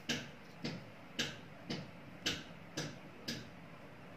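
Even, clock-like ticking, about two ticks a second, seven ticks in all.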